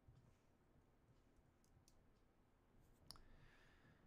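Near silence: room tone with a few faint clicks from a computer mouse and keyboard as a new passage is entered, the loudest about three seconds in.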